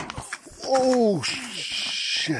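Mountain-bike crash into a ditch: a knock as the rider goes down, then a person's drawn-out "ooh" that falls in pitch, followed by a loud hiss to the end.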